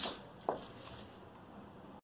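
Faint room tone with one light, short knock about half a second in, the wooden spoon tapping against the metal pot as the stirring stops.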